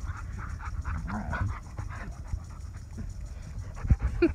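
A dog panting rapidly close to the microphone, in short, evenly repeated breaths.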